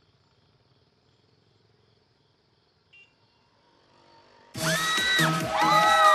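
Near silence with a faint short tone about three seconds in; then, about four and a half seconds in, loud electronic dance music starts abruptly, with a steady beat and synth notes that slide in pitch.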